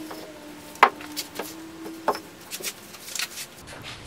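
A few sharp wooden knocks with light rubbing and scuffing as a short two-by-four block is set against and moved along the edge of a plywood panel. The loudest knock comes about a second in. Under the first half runs a faint steady hum that stops partway through.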